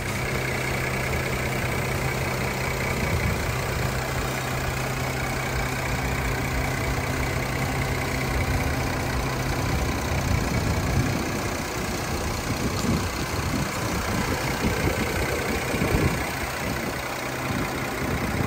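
Mercedes-Benz GLK350's 3.5-litre V6 idling with the hood open: a steady low hum, growing rougher and more uneven in the low end from about halfway through.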